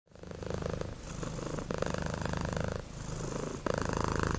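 Domestic cat purring close up: a rapid, steady rumble that swells and changes in rounds of about a second each.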